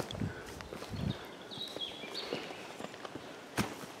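A few soft footsteps on sandstone rock. A faint, thin, high call wavers in the middle, and a single sharp click comes near the end.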